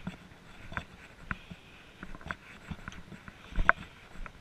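Footsteps of a hiker walking on a dirt forest trail: scattered soft steps and knocks, the loudest a little before the end.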